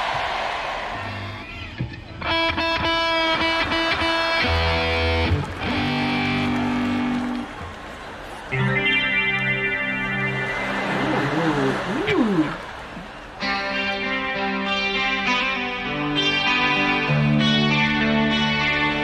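Recorded electric rock guitar riffs played in short separate phrases with brief gaps between them, while a theatre audience laughs and cheers.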